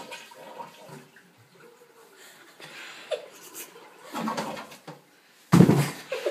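Toilet flushing, the water rushing in uneven surges, with a short loud knock near the end.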